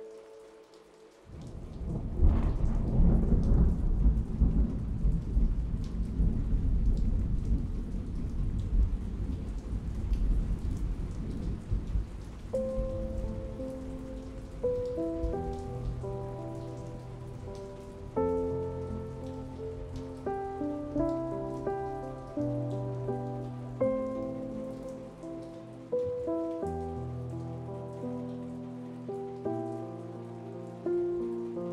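A clap of thunder breaks about a second in and its rumble dies away slowly over some ten seconds, over steady rain. From about halfway, soft piano notes play slowly over the rain.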